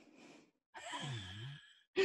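A person's soft sigh-like murmur, about a second long in the middle, its pitch dipping and then rising.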